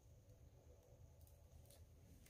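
Near silence: room tone with a faint steady low rumble and a couple of very faint ticks.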